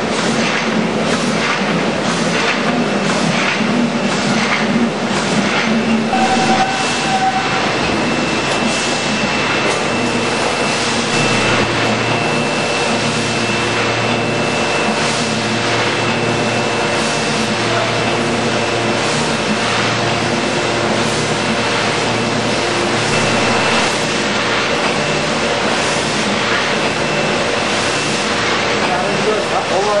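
Asahi AP-128L automatic flatbed die cutter running, a loud steady machine noise with a regular clatter of about one and a half strokes a second and a steady high whine.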